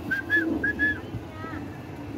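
Asian pied starling calling: four short, clear whistled notes in quick succession, followed about a second later by a brief two-toned note.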